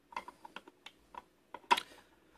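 Irregular small clicks and taps from an opened Taylor Group 2 safe combination lock as fingers press its lever against the brass wheel pack. The loudest click comes near the end.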